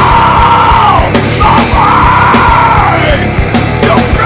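Heavy metal song: distorted guitar and bass over fast, driving drums, with yelled vocals held in long notes that fall away at their ends.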